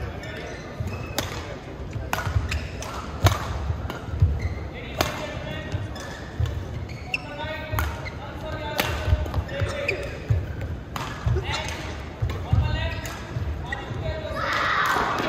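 Badminton rally: rackets striking the shuttlecock with sharp cracks at an irregular pace, over the low thuds of players' feet landing on the court mat, in a large echoing sports hall.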